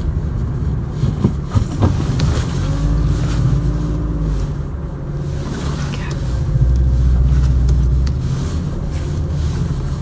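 Car running at low speed, heard from inside the cabin as it pulls into a parking space: a steady low rumble that swells for a second or two about seven seconds in. A few short knocks come about a second and a half in.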